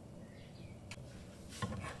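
A spatula knocking and scraping against a nonstick frying pan: a click about a second in, then a quick cluster of knocks with one low thump near the end. Faint bird chirps sound in the background.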